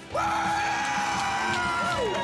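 A man's long, held yell as his mouth burns from extremely hot chicken wings, pitch rising slightly near the end, over background music.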